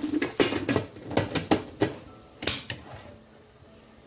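Stainless-steel pressure cooker lid being twisted shut into its lock: a quick, irregular run of metal clicks and scrapes, fading out about two and a half seconds in.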